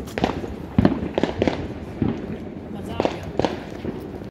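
Fireworks and firecrackers going off in sharp, irregular pops and bangs, about eight of them in four seconds, with the loudest about a second in.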